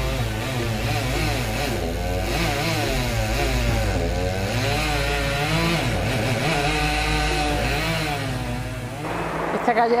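Chainsaw revving up and down over and over, its pitch rising and falling in waves, until it cuts off about nine seconds in.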